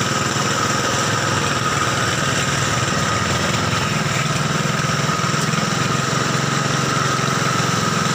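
A steady mechanical drone like a running engine, with a constant high whine over a low hum and no change in pace.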